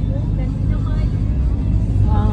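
Steady low rumble of a moving vehicle's engine and tyres on the road, heard from inside the vehicle, with faint voices under it.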